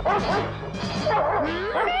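Cartoon dog barking several times in quick succession over background music.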